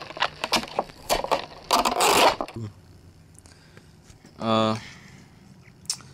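Adhesive tape being peeled off around the edge of plastic packaging: a run of crackling clicks and scrapes, with a louder tearing rasp about two seconds in, then quiet handling.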